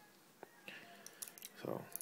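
Faint handling sounds from fingers turning a small 3D-printed plastic part: a single light click, then a few soft scrapes, over quiet room tone.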